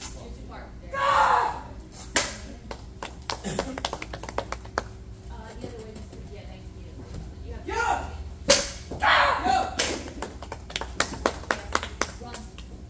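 A shout, then a sharp crack about two seconds in as a handheld red practice board is broken in a taekwondo strike, followed by a patter of scattered hand clapping. Near the end comes another sharp smack, more shouting and a second run of clapping.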